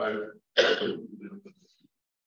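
A single sharp cough that trails off into throat clearing, starting about half a second in and fading out before the end.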